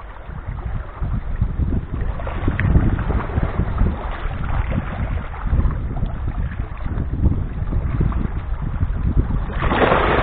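Small sea waves washing among boulders on a rocky shore, with wind rumbling on the microphone. Just before the end, a wave splashes against a boulder in one short, loud burst.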